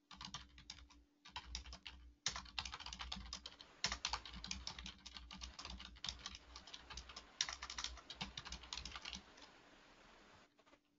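Fairly faint typing on a computer keyboard: quick runs of keystrokes with short pauses between them, stopping about a second before the end.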